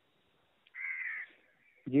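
A single short animal call, about half a second long, about a second in, heard through a phone line.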